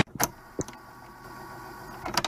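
Music cuts off suddenly, leaving a quiet break with a few short clicks in the first second and a faint steady low hum, like a sound-effect lead-in between tracks.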